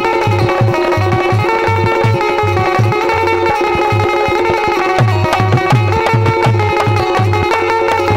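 Indian folk instrumental interlude, played live: a dholak keeps a fast, steady beat of deep strokes under a harmonium melody.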